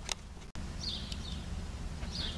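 Quiet outdoor background with a steady low hum, a short click right at the start and a brief high chirp, like a small bird, about a second in.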